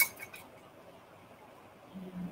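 A few light clinks of a paintbrush against a paint container as paint is mixed, stopping about half a second in, followed by quiet room tone.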